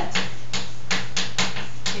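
Chalk writing on a blackboard: an irregular run of about half a dozen sharp chalk taps and strokes as words are written.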